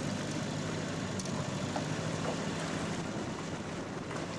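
Small tiller-steered outboard motor running at a steady, even pitch while trolling, with a wash of wind and water around the boat.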